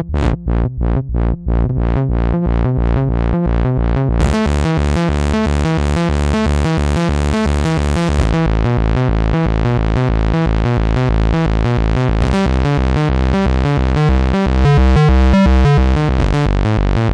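Mayer EMI MD900 virtual-analog synthesizer playing a fast, evenly repeating lead-and-bass pattern. The notes are short and separate at first and run together after about a second and a half. About four seconds in the sound turns much brighter, with a hissy top.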